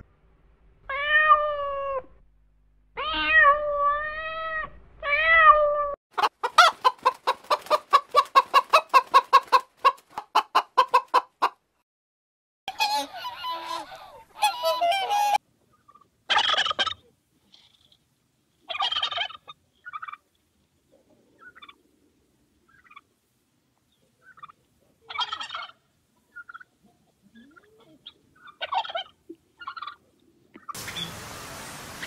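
A domestic cat meowing three or four times, followed by a tom turkey calling: a long, rapid rattling run of notes, then shorter gobbles and calls spaced out to the end.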